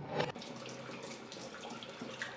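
Water from a hose splashing onto a metal etching plate held over a sink, rinsing the plate. It starts with a louder gush just after the start, then runs on as a steady spray.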